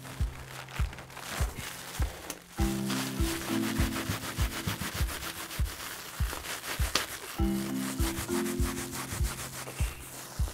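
Background music with a steady beat, with the rubbing and rustling of bubble wrap being pushed by hand into a wooden crate.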